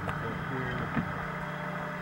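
Brief, muffled speech fragments over a steady low hum, with two short clicks, one at the start and one about a second in.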